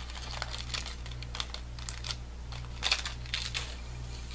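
Small plastic bag of craft beads being handled, crinkling, with scattered light clicks and ticks, a few louder ones about three seconds in.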